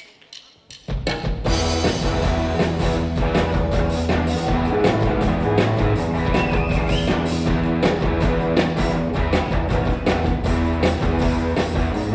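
Live rock band with drum kit, electric bass and two electric guitars coming in together about a second in, then playing on at full, steady loudness.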